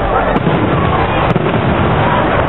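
Aerial fireworks shells bursting overhead, with two sharp reports: one about a third of a second in and a louder one just after a second. Constant crowd chatter runs underneath.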